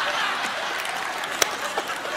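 Studio audience applauding, with one sharp click about one and a half seconds in.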